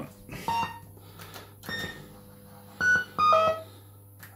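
Fruit machine's electronic sound effects: a series of short beeps and chirps at changing pitch, the loudest two near the end, with light clicks as the spinning reel comes to rest.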